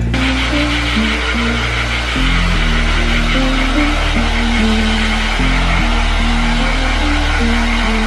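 Background music with slow, sustained bass and melody notes, over the steady rushing of a handheld hair dryer blowing.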